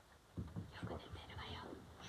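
Soft, whispered speech, starting about half a second in.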